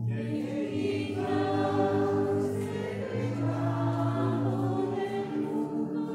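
A choir singing a slow sacred chant or hymn, the voices holding long, steady notes and moving from note to note every second or so.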